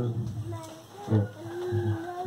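A man's voice amplified through a handheld microphone and loudspeaker: a couple of short syllables, then one long, level, drawn-out 'ehh' held through the second half.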